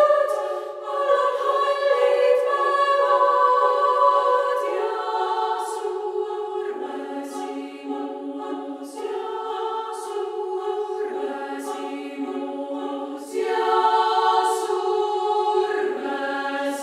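Female choir singing a cappella in Estonian: sustained close-harmony chords that shift every second or two, with crisp sibilant consonants. The chords swell louder about 13 seconds in.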